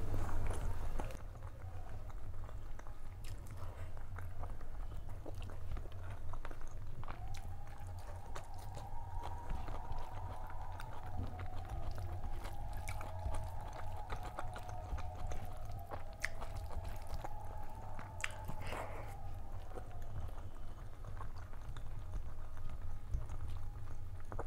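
Close-miked chewing and wet mouth sounds of a person eating rice and dal by hand, with small clicks and squishes as fingers mix the food on a steel plate, over a low steady hum. A faint wavering tone sounds in the background from about seven seconds to nearly twenty seconds in.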